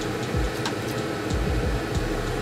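Steady mechanical whirring hum with a few soft knocks.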